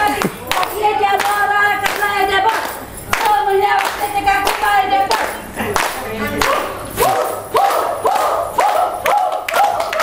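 A group of women singing a fugdi folk song to rhythmic hand clapping. About seven seconds in, the singing turns into short, quick repeated phrases.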